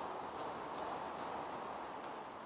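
Faint scraping and rustling of hands pushing soil and wood-chip mulch back into a planting hole over a bulb, a few soft scratches in the first second and a half over a steady background hiss.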